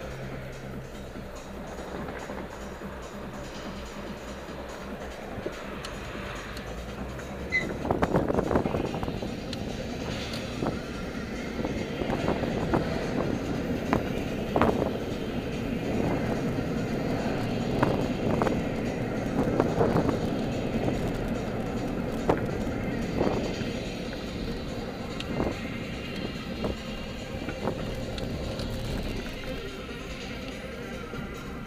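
Music playing inside a car cabin over the car's own engine and road noise. About eight seconds in, the car pulls away and the road noise grows louder, with scattered thumps as the car rolls over the road.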